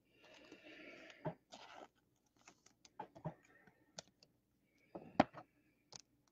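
Trading cards being handled: soft rustling and sliding, with several sharp clicks and taps.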